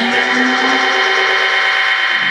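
Afro house mix from a Numark DJ controller with its bass and treble cut away on the mixer, leaving a thin, steady midrange sound.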